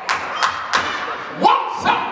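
About five sharp thumps, unevenly spaced, from a preacher striking or clapping at the pulpit. Short shouted vocal exclamations rise in pitch between them, most clearly in the second half.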